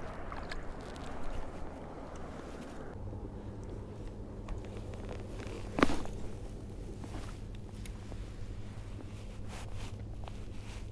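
Outdoor lake sound with a steady low drone from about three seconds in, and one sharp click about six seconds in as a spinning rod and reel are handled for the next cast.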